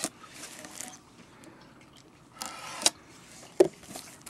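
Plastic wrapping on a trading-card tin being handled and pulled: brief crinkling rustles, the loudest about two and a half seconds in, with sharp clicks of the wrap or tin at the start, after that rustle and near the end.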